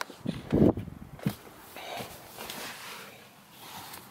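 A person's short breathy grunt, then a click and faint handling noises.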